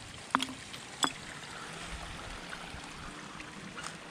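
Shallow creek water trickling steadily, with two sharp knocks in the first second or so.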